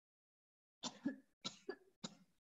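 Silence, then a person coughing in two quick, abrupt bursts starting about a second in, faint over a video-call connection.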